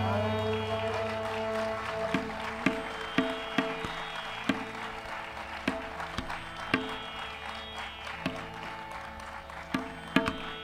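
Hindustani classical music: a sung note ends and a steady drone carries on, slowly fading, under sparse, irregular tabla strokes.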